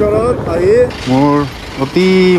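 A person's voice with long held, gliding pitches, the rhythm of singing or drawn-out speech, with short pauses between phrases.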